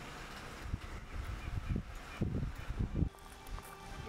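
Wind buffeting the microphone in irregular low gusts, starting about a second in and dropping away about three seconds in, over a faint outdoor background hiss.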